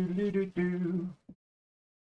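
A man's voice singing two held notes, cut off suddenly a little over a second in, then complete silence.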